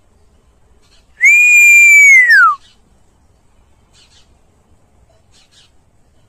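One loud buzzard-style whistled call, about a second and a half long: a held note that slides steeply down in pitch at the end, like the mewing 'peee-oo' of a common buzzard.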